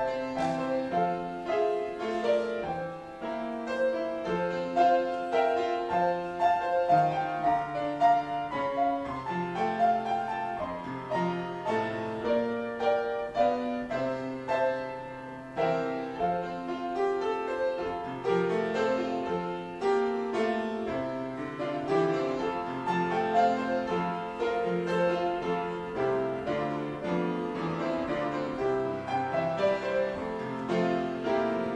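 Solo grand piano playing a flowing piece of overlapping notes and held chords, with no pauses.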